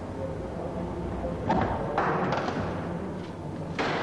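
A few thuds and scrapes from the crash-damaged door of a Volkswagen bus being opened and handled after a frontal crash test, with a low background underneath.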